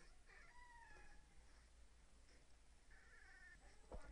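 Near silence with two faint, drawn-out animal calls that fall in pitch, one just after the start and one about three seconds in.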